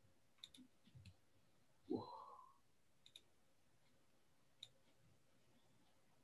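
Near silence broken by a few faint computer mouse clicks, and a brief rising voice sound about two seconds in.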